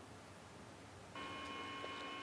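Near silence, then, about a second in, a faint steady hum made of several held tones.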